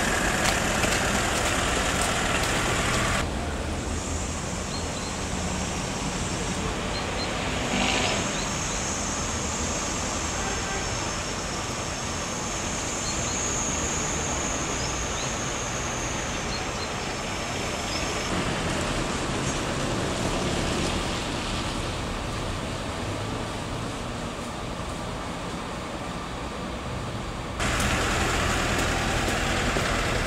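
Street traffic noise: cars on a wet road, a steady hiss of tyres and engines. About three seconds in it gives way abruptly to a quieter stretch of street sound with some indistinct voices, then returns near the end.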